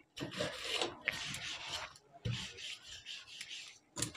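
Dish-washing scrub sponge, loaded with oil and toothpaste, rubbed back and forth over the black enamelled body and bed of a Singer sewing machine to clean off dirt. It makes a run of rasping scrubbing strokes, with a low bump a little past the middle.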